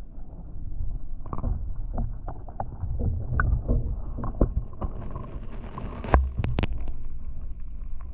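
Muffled rumbling and sloshing of water heard through a GoPro camera's microphone held underwater in an aquarium, with scattered knocks from handling. A sharp knock about six seconds in is the loudest.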